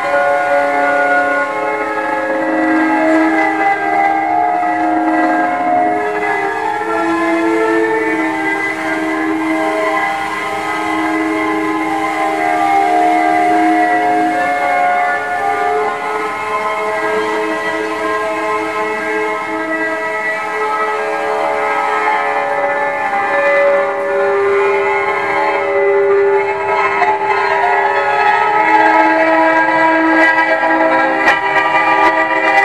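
Long held tones from the exposed strings of a stripped piano frame, sustained by small devices pressed onto the strings. They overlap into a steady, drone-like chord whose notes shift every few seconds.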